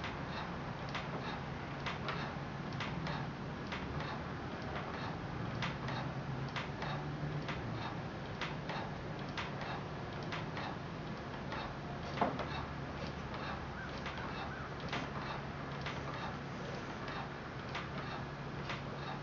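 Manual pottery kick wheel turning, with a run of light ticks roughly two a second and one louder knock about twelve seconds in, over a steady low hum.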